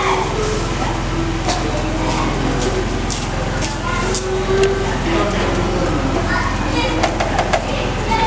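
Plastic spatula scraping and knocking against a metal pot as jollof rice is stirred, with a quick run of knocks near the end. Background voices and a steady low hum run underneath.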